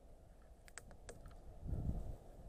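A quick cluster of light clicks, five or so within about half a second, from climbing hardware (carabiners, rope device) being handled. Near the end a low rumble of microphone handling or wind sets in.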